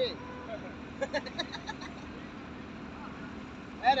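Players' voices calling across the ground: brief chatter about a second in and a loud call near the end, over a steady low background hum.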